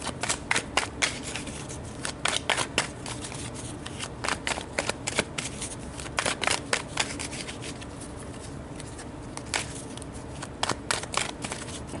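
A deck of tarot cards being shuffled by hand: quick runs of short, sharp card snaps and flicks, thinning out for a couple of seconds in the second half before picking up again.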